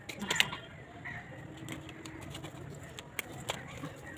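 Pigeon cooing in low, soft calls, with scattered clicks and taps of hands working soil around a plastic plant pot.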